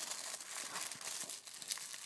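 Soft crinkling and rustling of paper wrapping as a small gift package is handled and opened by hand.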